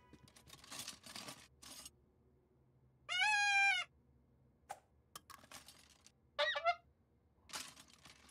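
Plastic toys clattering as a child digs through a toy box, then a small toy horn blown once: a single steady, bright note lasting under a second, about three seconds in. A short falling squeak and more rummaging clatter follow.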